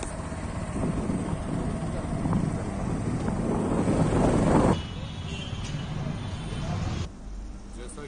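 Road noise and wind on the microphone from a vehicle driving along a street, growing louder for the first four and a half seconds, then cutting suddenly to quieter traffic sound.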